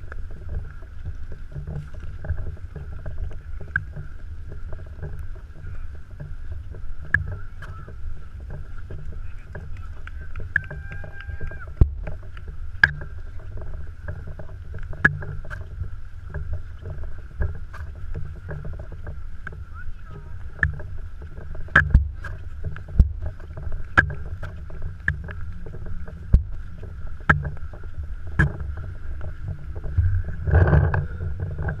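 Low rumbling handling and wind noise from a camera mounted on a paintball marker as the player walks, with sharp pops scattered irregularly throughout.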